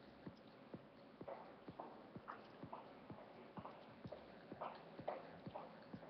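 Faint, evenly spaced clicking, about two clicks a second, with a few brief louder sounds in the middle.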